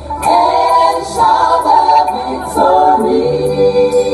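Large gospel choir singing together in sustained, held notes.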